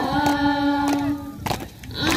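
A group of young voices singing a welcome song together, holding one long note, with a brief gap near the end before the next line starts.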